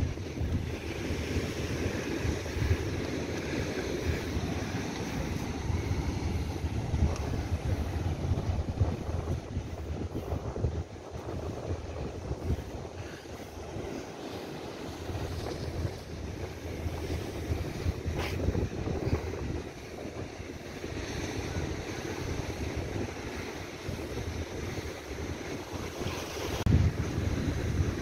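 Wind buffeting the microphone over ocean surf washing against rocks, a steady, rumbling noise that rises and falls.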